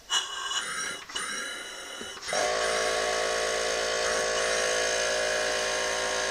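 Small air compressor's electric motor kicking on about two seconds in and then running steadily with a whine, while it supplies the air for an engine converted to run on compressed air. A softer hiss of air comes before it.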